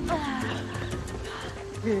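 A winded woman breathing heavily and painfully, with a short falling gasp just after the start, over a steady low film score.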